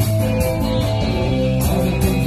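A rock band playing live: strummed electric guitar over bass and drums, with the cymbals thinning out mid-way and coming back near the end.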